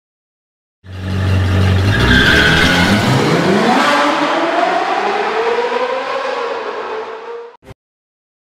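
Car engine revving up through a long rising pitch, in an intro sound effect, starting about a second in and cutting off suddenly near the end with a short blip after.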